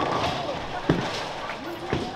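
Bowling-centre din: background voices and chatter, with two sharp knocks of balls and pins, about a second in and again near the end.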